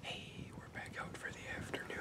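Whispered speech: a young man talking quietly, close to the microphone.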